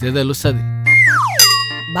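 Comedy sound effect over background music: a pitch that glides steeply down about a second in, then a sudden ringing note partway through. A brief word of speech comes first.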